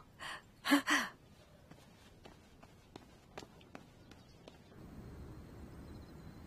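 A woman gives a short breathy laugh in the first second. It is followed by near-quiet with a few faint clicks, and a faint steady low hiss comes in near the end.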